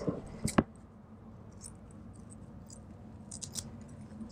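Scissors cutting through a strip of lace: a sharp snip about half a second in, followed by a few faint small clicks.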